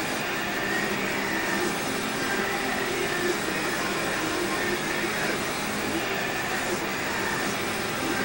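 A steady rushing noise with a faint hum under it.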